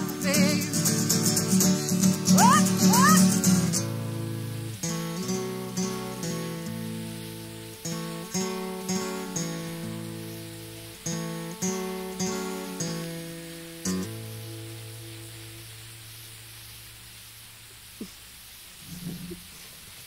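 Acoustic guitar playing the song's instrumental ending. It is strummed for a few seconds, then plays single picked notes, and a final note about 14 seconds in rings out and fades away.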